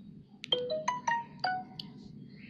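A short electronic jingle of about six quick notes from an automated phone line, heard through a Samsung Galaxy S7's earpiece during a call and picked up by another phone, so it sounds thin. The notes rise and then fall.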